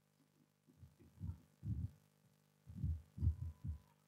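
Chalkboard eraser wiped across a chalkboard in a run of uneven strokes, each a dull, low thump, about two a second.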